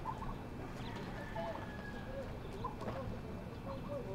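Outdoor ambience: scattered short bird calls over a steady low background rumble.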